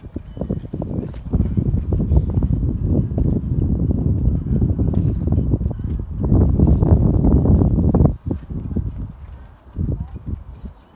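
Wind buffeting the microphone: a loud, gusting low rumble that drops away suddenly about eight seconds in.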